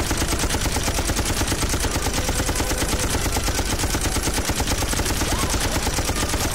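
Film-soundtrack belt-fed machine gun firing one long, unbroken burst of rapid, evenly spaced shots without stopping, the movie cliché of ammunition that never runs out.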